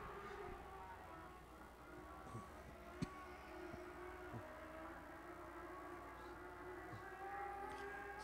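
Faint, distant engines of several ModLite race cars running around a dirt oval, a steady drone whose pitch wavers as they lap. There is one sharp click about three seconds in.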